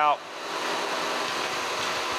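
Kearney & Trecker Model 3H horizontal milling machine running steadily while its table is brought back out after a gear-cutting pass.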